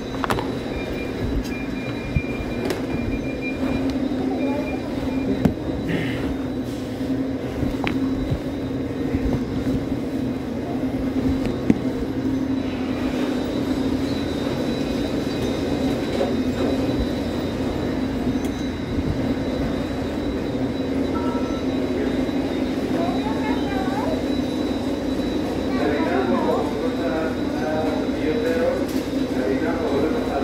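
Steady mechanical hum of a supermarket bakery's equipment and ventilation, with a thin high whine over it. Indistinct voices come through in the second half.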